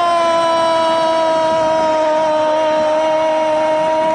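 A male radio football commentator's long drawn-out goal cry, one held note sagging slightly in pitch, for a goal just scored.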